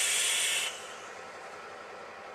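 Vape hit on a dual-18650 parallel mechanical box mod firing a 0.12-ohm coil in an El Cabron rebuildable atomizer: a steady hiss of the coil vaporising e-liquid and air drawn through the atomizer. It stops suddenly about two-thirds of a second in, leaving a much fainter background hiss.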